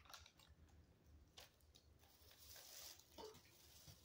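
Near silence, with faint chewing and a few soft clicks and rustles as a person eats a soft chocolate cake muffin.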